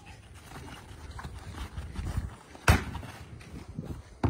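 Low wind rumble and scuffling of players moving on grass, broken by one sharp smack of an impact about two-thirds of the way through, as a player is hit and goes down.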